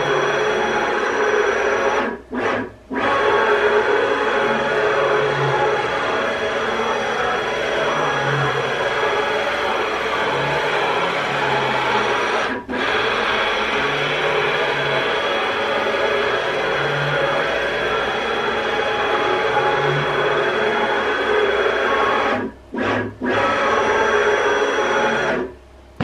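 Stepper-driven ball screw of a long CNC linear axis spinning at a high test speed, the carriage traversing the axis and back with a steady mechanical whine and a low rhythmic throb. It stops briefly about two seconds in, around the middle, and a few times near the end as the carriage stops and reverses. It is running at the speed where the long unsupported screw is being tested for whip.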